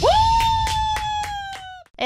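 A woman's long high vocal cry that swoops up at the start, holds, sags a little and cuts off after a second and a half, over rhythmic hand claps about four a second, as the song finishes.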